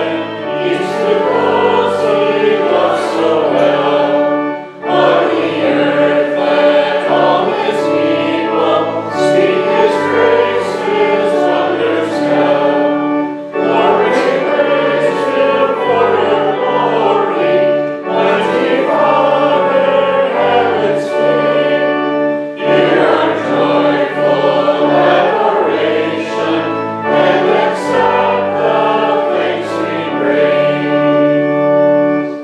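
A congregation singing a hymn of praise with organ accompaniment, in phrases with short pauses between them.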